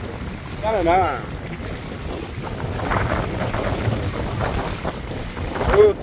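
Wind buffeting the microphone over small lake waves lapping and washing against shoreline rocks, with a man's short exclamation about a second in and another near the end.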